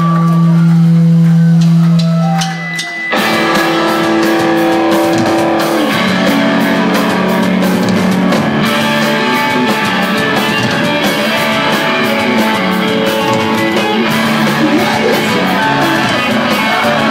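Live rock band with guitars and drum kit: a held low note rings for about three seconds, then the drums and full band come in suddenly and play on loudly.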